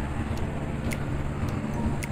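Steady low background rumble of the kind road traffic makes, with faint light ticks about twice a second.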